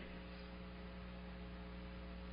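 Steady electrical mains hum with a faint hiss underneath, heard in a pause in the speech.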